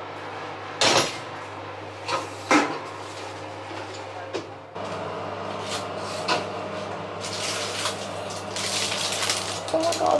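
Metal baking tray and oven shelf clanking as a tray of pastries is handled at an open oven with oven gloves: one sharp clank about a second in, two more around two to two and a half seconds, then a run of rattling and scraping over the last few seconds. A steady low hum runs underneath.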